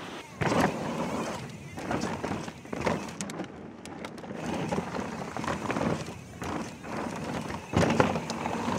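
Mountain bike being ridden down a dirt singletrack, heard from a handlebar-mounted action camera: tyres rolling over dirt with wind rushing on the microphone. The sound swells and drops every second or so as the rider pumps the bike through the trail for speed.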